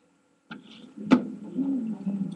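An acoustic guitar starting up: a click, then one sharp strum about a second in that keeps ringing low, with a short low wavering sound over it near the end.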